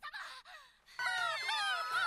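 A high, wavering wailing voice of an anime character, played back quietly from the episode. It starts about halfway through, after a brief faint call and a short pause.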